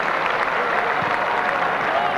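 Football crowd on the terraces applauding: a dense, steady clatter of clapping with some voices mixed in.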